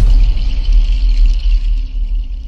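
Logo-intro sound effect: a sharp hit at the start, then a deep, sustained bass rumble under a thin, high ringing tone that fades near the end.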